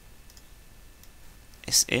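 A quiet room with faint background hiss, then a single sharp computer mouse click near the end as a vertex is dragged in 3ds Max.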